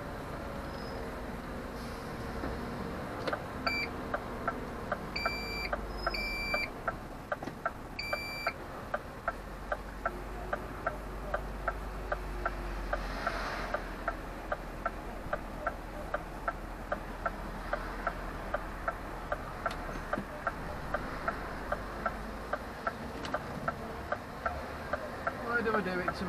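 Lorry's turn indicator ticking evenly, about one and a half ticks a second, over the low drone of the engine heard inside the cab. A few seconds in, four short high beeps sound.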